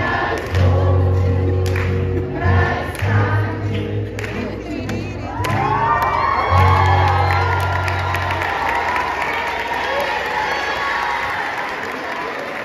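A children's choir sings over a recorded backing track with a steady bass line. About halfway through, the singers break into cheering and shouting. The backing track stops a few seconds before the end, leaving cheering and clapping.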